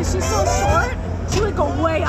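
Several people's voices chattering and overlapping, over a steady low hum.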